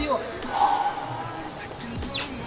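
Rear hub motor of an electric motorcycle with its wheel spinning in the air, slowing down under regenerative braking.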